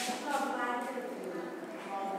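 A faint voice in the background, with light footsteps on a hard floor.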